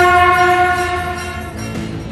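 News-intro sound effect: a loud, sustained horn-like tone held on one pitch with many overtones, fading out about a second and a half in as music with sharp percussive hits takes over.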